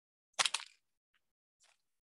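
Short handling crackle, a cluster of quick clicks about half a second in as the frosted cupcake in its paper liner is set down on the wooden table, then a couple of faint ticks.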